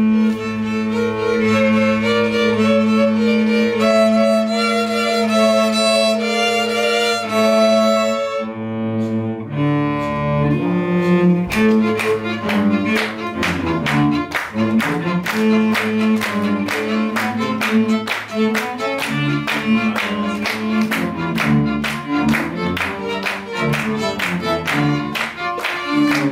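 String quintet playing, with bowed notes held over a low sustained drone at first. About twelve seconds in, a faster rhythmic section starts with sharp hand claps keeping time, about two a second.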